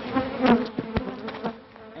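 Honeybee colony buzzing at an opened hive, a steady hum, with two sharp knocks about half a second and one second in.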